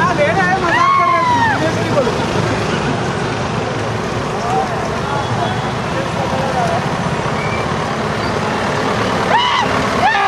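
Steady rumble of a truck and road traffic, with loud, high-pitched shouts from people riding on the truck about a second in and again near the end.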